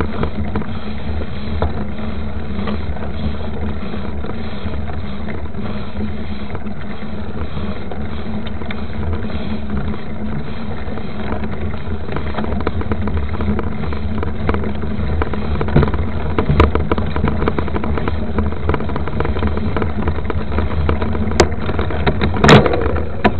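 Mountain bike with 29-inch knobby tyres rolling fast on a dirt road, heard from a camera beside the front wheel: a steady rumble of tyre and wind noise. Sharp knocks and rattles from bumps come in over the last several seconds, loudest near the end.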